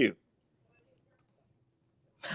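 The last word of speech, then near silence in which a few faint, short clicks sound close together about a second in.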